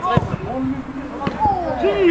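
A football kicked once, a single dull thud just after the start, amid men's voices calling out across the pitch.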